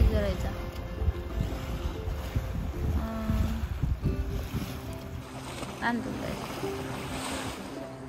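Wind buffeting a phone microphone in an uneven low rumble, with brief snatches of voices in the background.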